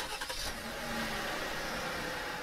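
Car engine starting and running steadily, opening with a sharp click.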